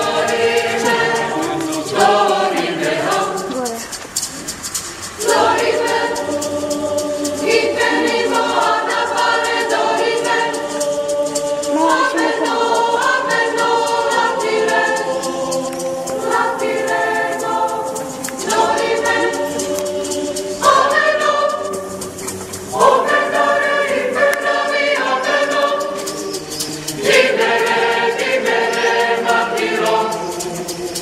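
Mixed choir of men's and women's voices singing together in long sustained phrases, broken by short pauses a few times.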